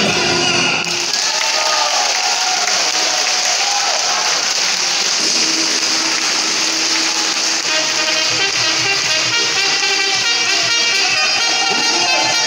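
An ensemble song with voices and instruments breaks off about a second in, and a hall audience applauds steadily for the rest.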